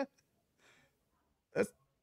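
A pause in conversation: near silence with a faint brief hiss about half a second in, then a man saying one short word, "that's," near the end.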